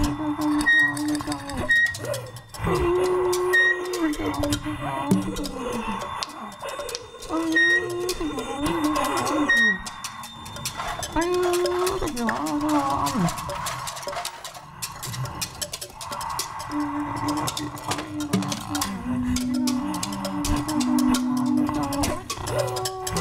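Experimental ensemble music on homemade instruments made from found objects: held, voice-like wind tones that slide up and down in pitch, with short high tones and many small clicks and rattles throughout.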